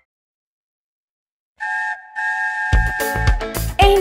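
Train whistle: a short blast, then a longer steady one on two tones, after about a second and a half of silence.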